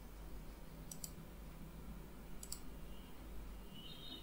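Quiet room tone with a low hum and two faint computer-mouse clicks, one about a second in and one about two and a half seconds in. A faint high tone comes in near the end.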